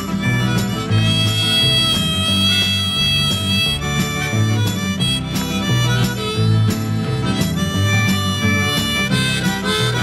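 Instrumental break of a 1971 country-rock band recording: harmonica playing a melody, with one long held note early on, over bass guitar, drums and rhythm guitar.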